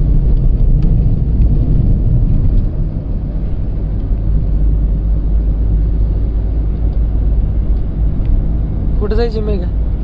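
Steady low rumble of road vehicle noise, with no rise or fall, and a brief voice near the end.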